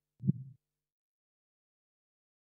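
A single deep, heavy thump like a heartbeat sound effect, about a third of a second in and gone within half a second, followed by dead silence.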